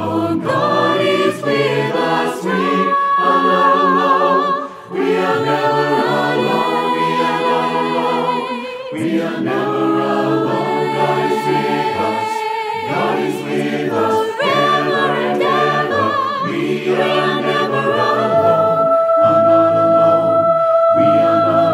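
Choir singing in harmony: long held chords that change every second or two, with vibrato on the upper voices.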